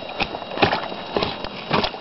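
About four dry knocks and cracks of sticks, roughly half a second apart, as someone moves over and handles the sticks and mud of a beaver lodge.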